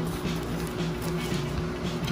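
Faint rustling of a small plastic zip-lock bag being handled and opened by hand, over a low steady hum with a low note that comes and goes.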